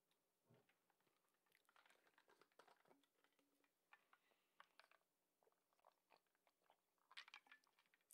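Near silence, with faint scattered small clicks.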